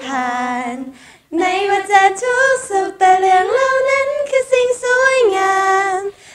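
A group of young women singing a slow Thai pop hook together a cappella, long held notes stepping up and down in pitch, with a short breath pause about a second in.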